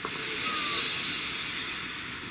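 A person taking one long, deep breath: a steady breathy rush that begins at once and slowly fades near the end.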